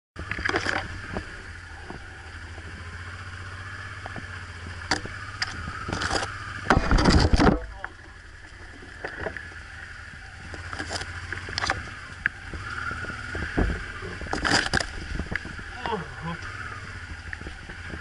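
Honda Transalp 600V's V-twin engine running at low speed over a rutted mud track, with repeated knocks and scrapes from bumps and branches brushing the bike. The loudest is a rushing burst about seven seconds in.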